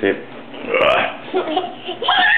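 A person's short wordless vocal sounds and laughter.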